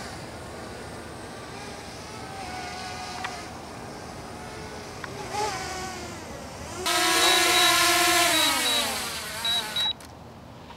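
Small DJI Mavic quadcopter drone: a faint propeller hum for most of the time, then, about seven seconds in, a loud close-up propeller whine that holds steady and then drops in pitch near the end as the motors slow.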